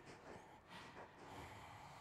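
Near silence: a faint hiss with a few soft breathy sounds.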